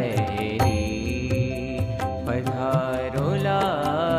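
Background devotional music: a sung melody with some long held notes over a quick, steady beat of sharp percussion ticks.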